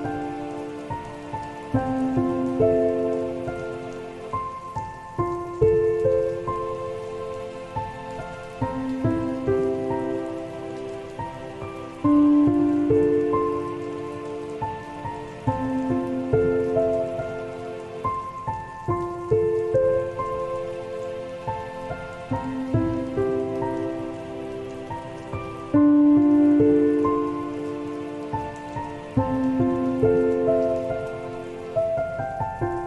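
Slow, soft solo piano playing sustained notes and chords that ring and fade, with a louder phrase starting about every six or seven seconds, over a steady sound of falling rain.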